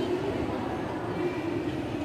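Steady rumbling background noise of a large hall, with faint indistinct voices.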